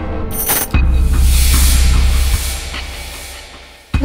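Suspense background score: a low steady drone with a short whoosh about half a second in, then a hissy wash that fades out toward the end.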